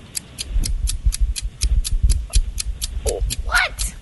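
Game-show countdown timer ticking, about four even, sharp ticks a second, over a low bass rumble. A brief voice sound comes near the end.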